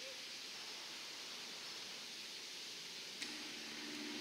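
Faint steady hiss of outdoor background noise, with no distinct event. About three seconds in, a brief click is followed by a low steady hum.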